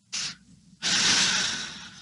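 A man's audible breath: a short puff, then a long breath of about a second that fades away.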